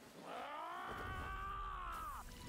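A man's single long, drawn-out yell that rises, holds and falls away at the end, with a low rumble coming in under it about a second in.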